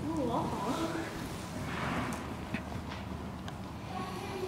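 Brief speech in the first second, then a horse moving on soft arena footing: dull hoof sounds with a few light clicks.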